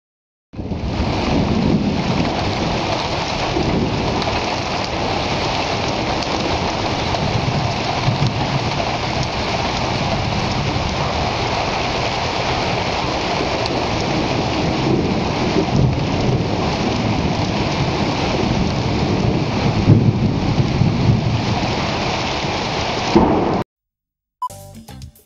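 Heavy rain falling steadily, with low rumbles of thunder rising and falling several times. It starts about half a second in and cuts off abruptly just before the end.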